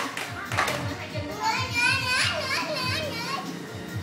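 A young child's high voice calling out in rising and falling squeals from about one and a half seconds in, over music with a low regular beat. Two sharp clacks of the handheld round discs near the start.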